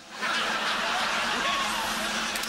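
A studio audience laughing, a dense crowd noise that swells in just after the start and holds steady.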